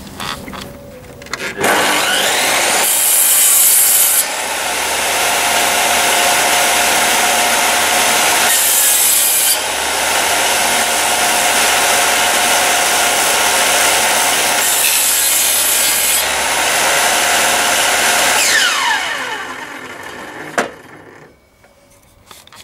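A table saw's circular blade starting up and cutting through rough timber boards, a loud steady sawing noise with three shriller spells. Near the end it is switched off and the blade winds down in falling pitch, followed by a single click.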